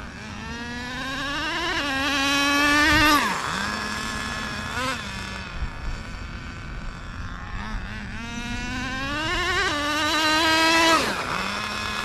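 Nitro glow engine of a Traxxas 4-Tec two-speed RC car running flat out on two high-speed passes. Each time its pitch climbs steadily, then drops abruptly as the two-speed gearbox changes gear, and holds there before fading; the gear change is working properly.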